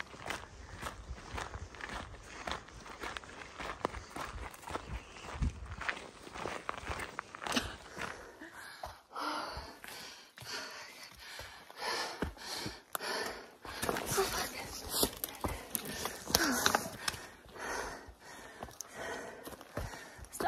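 Hiker's footsteps on a dirt trail and then up steep rock and roots, with irregular knocks of trekking poles and loud breathing on the climb. A short vocal sound comes about sixteen seconds in.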